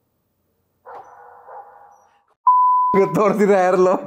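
Film trailer soundtrack: a steady high beep starts sharply about halfway through, then a loud cry with a wavering pitch takes over for the last second.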